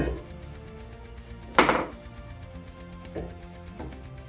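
Metal clanks from steel angle bar being handled on a workbench: one at the start, a louder one about one and a half seconds in, and two lighter knocks near the end, over background music.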